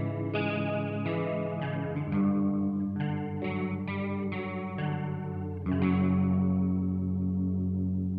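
Quiet passage of doom metal music: an electric guitar with a chorus effect picking single notes and chords that ring and decay over sustained low notes, about two new notes a second. Near the end it settles on one chord left ringing and fading.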